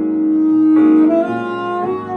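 Saxophone holding one long note, then playing a phrase that steps upward, over grand piano chords in a jazz-samba ballad.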